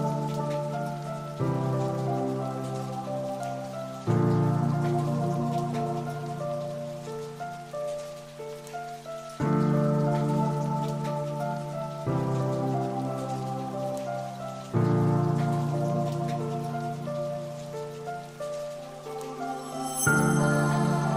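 Soft background music: held low chords that change every few seconds, each entering with a fresh swell, with higher notes moving above them and a light rain-like patter mixed in.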